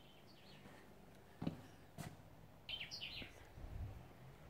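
Faint birdsong: a few soft chirps near the start and a quick burst of chirps about three seconds in. Two sharp knocks come between them, about half a second apart, and there is a low rumble near the end.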